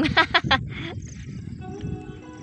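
A woman laughing: a quick run of laughter pulses in the first half second, trailing off in a breath, then quieter.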